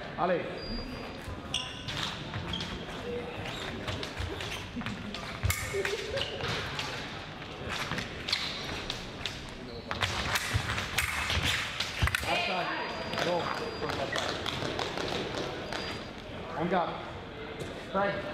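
Fencing footwork and blade action: feet stamping and sliding on the piste with sharp clicks of blades, and short voices in between.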